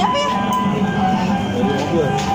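Electronic jingle music playing steadily, a bright looping tune of the kind played by a coin-operated kiddie ride car.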